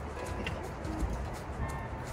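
A dove cooing in the background, a few short low notes.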